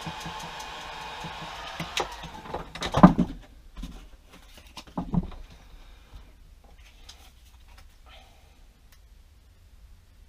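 Handheld electric heat gun blowing steadily as it warms a plastic wall holder, switched off about three seconds in with a sharp knock. A second knock follows about two seconds later as the tool is set down, then faint handling rustles.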